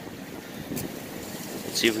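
Steady wind noise on the microphone in an open field, with a faint tick about a second in; a man starts speaking near the end.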